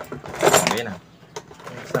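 Metal hand tools clinking and rattling as a hand rummages through a box of tools, with a few sharp clicks in the second half.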